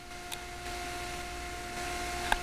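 Bedini motor running steadily: a constant hum with a high, even tone over a hiss, and one light click about a third of a second in.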